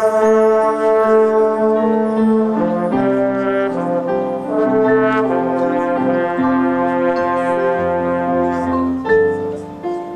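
Marching band brass section playing slow, held chords that change every second or two, with a short dip in volume near the end.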